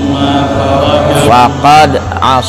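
A man chanting Arabic in a drawn-out, melodic recitation style, with long held notes and rising and falling phrases, over a steady low hum.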